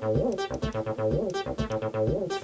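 Mutable Instruments Ambika synthesizer playing a looping 303-style monophonic line, sequenced by a MIDIbox Sequencer V4. Some notes slide in pitch into the next, because glide is switched on for a step.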